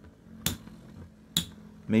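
Two Metal Fight Beyblades, MF Galaxy Pegasus F:D and Earth Pegasus W105BS, clashing as they spin in a plastic stadium: two sharp metallic clacks about a second apart, the first about half a second in.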